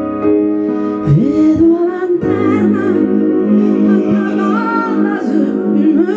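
Live female voice with keyboard accompaniment of piano and synthesizer. Sustained chords carry the start, with a swooping synth glide down and back up about a second in. The voice enters after about two seconds with a winding, held melody over the chords.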